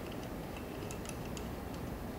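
Faint ticks, several irregularly spaced, from the knob on top of a beech-wood pepper mill being turned to adjust its ceramic grinder's grind setting.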